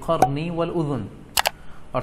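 A man's voice drawing out a word of Arabic recitation, then a sharp double click about a second and a half in, like a camera-shutter or mouse-click sound effect.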